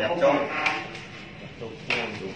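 People talking, with a sharp click about two-thirds of a second in and another near the end.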